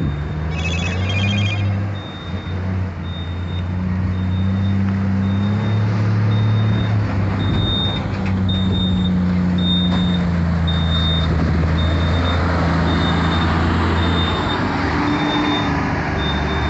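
Diesel engine of a truck-tractor pulling a bitrem (B-double) grain trailer combination, running steadily at low revs as it reverses. Its reversing alarm beeps about twice a second throughout.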